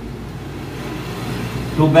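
Steady low background rumble with a faint hiss during a pause in speech; a man's voice comes back in at the very end.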